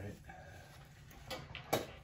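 A person gagging after swallowing a foul-tasting liquid: a short voiced groan at the start, then faint sounds and a sharp knock near the end.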